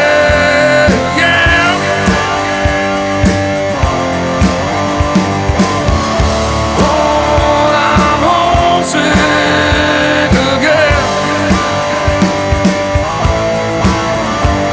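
Blues-rock music: electric guitar over bass and a steady drum beat, with no vocals.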